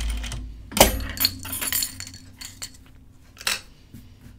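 Light clicks, clinks and fabric rustle from handling at a Juki sewing machine as a rayon garment piece is repositioned under the presser foot: one sharp click about a second in, a scatter of small clinks just after, and another click near the end.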